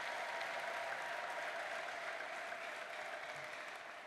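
A large congregation applauding, the clapping slowly dying down toward the end.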